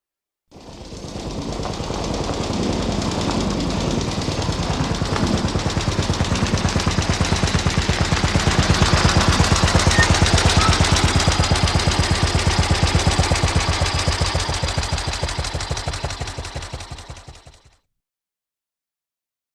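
A rapid, even rattle of pulses, many a second, in a music recording. It fades in, swells to its loudest about midway and fades out again.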